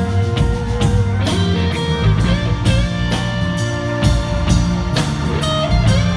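Live rock band playing an instrumental passage: electric guitar lead with notes bending in pitch over electric bass and a steady drum-kit beat.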